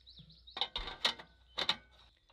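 Metal top of a Gas One portable butane stove being lowered and set back in place, three light clicks and knocks as it seats onto the rare-earth magnets added under it.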